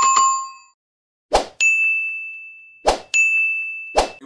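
Sound effects of an animated subscribe reminder: a bright notification-bell ding, then two short swishes, each followed by a long, steady, high ding.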